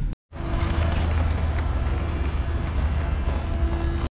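Van engine and road noise, a steady low rumble with a faint hum over it.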